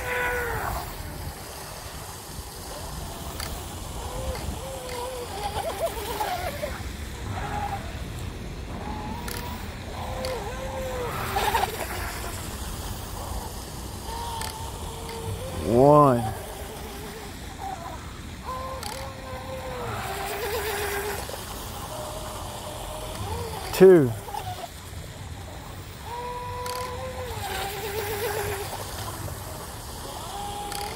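Small brushless electric motor of a 12-inch RC micro hydroplane, whining faintly and coming and going as the boat runs laps around the buoys.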